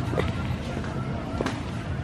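Background murmur of people's voices outdoors, with a few short sharp clicks or knocks.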